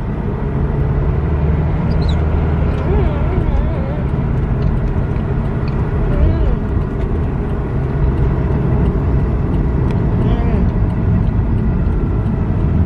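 Steady low road and engine noise inside a moving car's cabin, with faint voices now and then.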